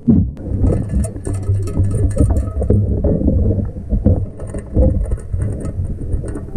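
Muffled underwater noise: low rumbling water movement with a steady run of irregular knocks and scrapes, as a metal sand scoop digs through rocks and gravel on the riverbed.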